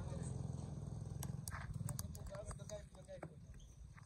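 Distant voices calling across an open ground, with a quick run of sharp clicks in the middle and a low rumble underneath. The sound fades toward the end.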